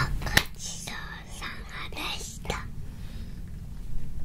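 Children whispering, with one sharp hand clap about a third of a second in, over a steady low hum.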